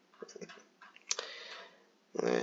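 Computer mouse being scrolled and clicked while paging through a document: a few soft clicks, then one sharper click about a second in.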